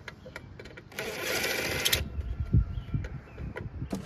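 Cordless drill/driver running for about a second, driving a screw into an aluminium trailer roof rail, followed by a single heavy thump.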